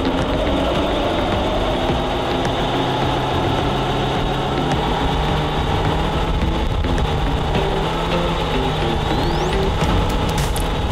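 Suzuki Jimny engine running at steady, raised revs under load during a 4x4 roller test, its pitch rising slightly in the first second and then holding, with background music underneath.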